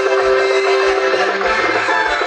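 Live band music with drum kit, electric guitar and keyboard: a long held note over a steady drum beat.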